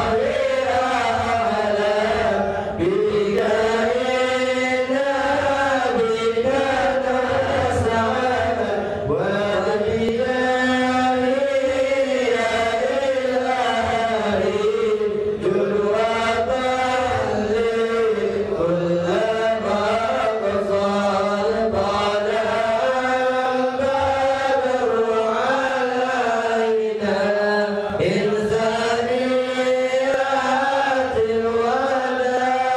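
Men's voices chanting an Islamic devotional chant in Arabic, one slow melody that rises and falls without a break.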